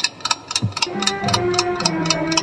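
Mechanical alarm clock ticking quickly and evenly, about five ticks a second. Soft sustained music notes come in under the ticking about a second in.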